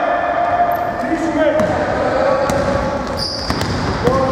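Basketball bouncing on a hardwood gym floor during play, with players' voices calling out over it.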